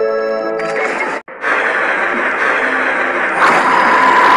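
Edited soundtrack of a cartoon-style transformation: a held synth chord gives way, about half a second in, to a loud rushing noise effect. The noise cuts out for an instant about a second in, then returns and grows brighter near the end.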